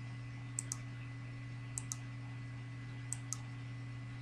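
Computer mouse button clicking: three pairs of short, sharp clicks spaced about a second apart, over a steady low electrical hum.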